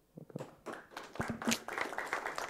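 An audience starts clapping about half a second in, and the applause grows denser and louder.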